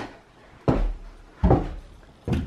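Two dull thumps about three-quarters of a second apart, each dying away quickly, with quiet room tone between them.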